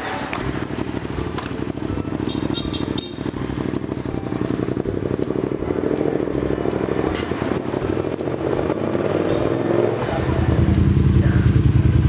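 Yamaha MT-07 (FZ-07) motorcycle's parallel-twin engine running on a short test ride, rising in pitch as it pulls away and then much louder in the last two seconds as it comes back close by. The test rider judges the engine good.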